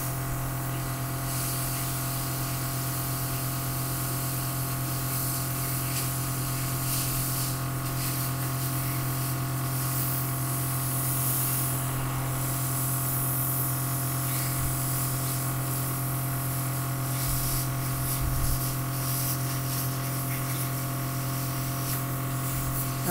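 Craftwell eBrush airbrush compressor running with a steady hum, with the hiss of air and liquid makeup spraying from the siphon airbrush swelling and fading as the flow is adjusted.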